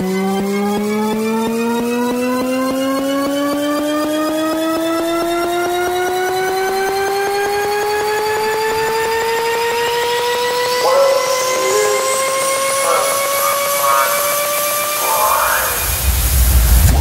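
Psytrance synthesizer riser: a sustained, many-overtoned synth tone gliding slowly and steadily upward in pitch, joined about ten seconds in by a rising noise sweep that climbs to a high hiss near the end.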